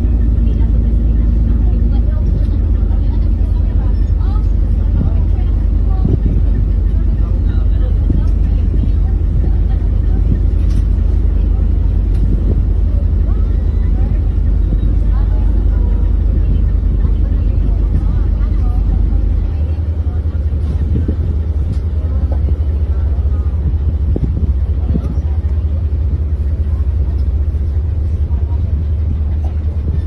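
Steady low rumble of the ferry's diesel engines heard from the deck while under way. Its deepest drone eases off about two-thirds of the way in.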